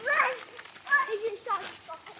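Young children's voices calling out and shouting in play, a few short cries about half a second to a second apart.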